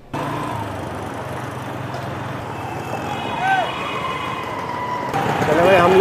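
Congested street traffic heard from a motorbike riding through a jam: a steady rumble of engines and road noise, with a few brief higher tones in the middle. A man's voice starts near the end.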